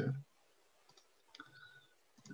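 A few faint computer clicks over otherwise quiet call audio, about a second in and again around a second and a half, after a spoken word ends at the very start.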